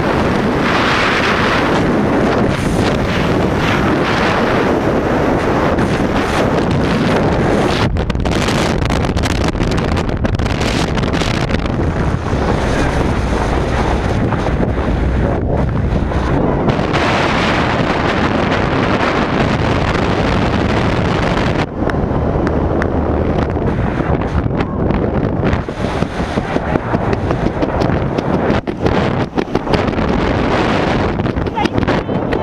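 Loud, steady wind rush over a wrist-mounted camera's microphone during a tandem skydive freefall. Over the last several seconds, as the parachute is open, the rush becomes uneven and gusty.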